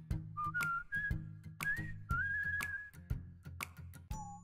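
Background music: a whistled melody of gliding notes over a light, steady beat of about two strokes a second with a soft bass line.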